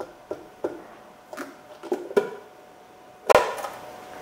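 Screwdriver prying a center cap off a car wheel: a series of light clicks and taps, then one loud snap a little over three seconds in as the cap comes free.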